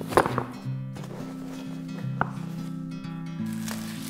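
Soft background music of sustained low notes, with two sharp clicks about two seconds apart, the first the loudest, from a bassinet's folding frame as it is collapsed.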